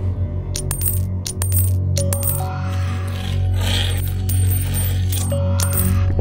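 Coins dropping one after another into an arcade fortune-telling machine's coin slot, a string of sharp metallic clinks over a steady low music drone.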